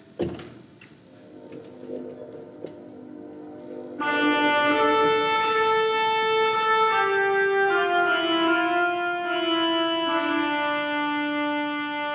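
A short knock, then about four seconds in an organ comes in with held chords whose lower notes step downward: the introduction to the sung psalm refrain.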